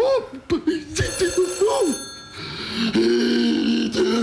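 Telephone bell ringing, with a man's voice making loud, drawn-out noises over it; the voice holds one long steady note through the second half.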